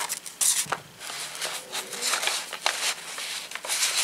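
Cardstock paper tags rustling and scraping as they are handled and slid into a paper envelope pocket, with irregular light clicks and taps.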